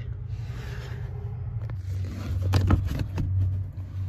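Scraping and rubbing as fog-light wiring is fed by hand through the firewall hole under the dashboard, the wire dragging against plastic trim and carpet. A few light knocks come in the second half, over a low steady rumble.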